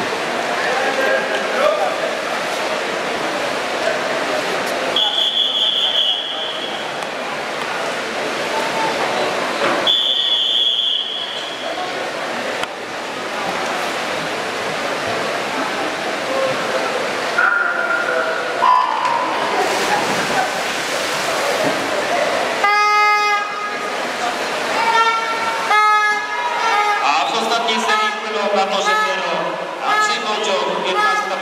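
Crowd noise echoing in a swimming hall, with two long, high referee's whistle blasts about five and ten seconds in that call the swimmers up onto the blocks. A brief electronic horn-like start signal sounds a little over twenty seconds in, and spectators then cheer and shout as the breaststroke race gets under way.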